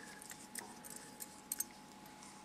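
A few faint, light clicks and clinks, including a quick pair near the end, from small fly-tying scissors being handled before trimming a fly's wing.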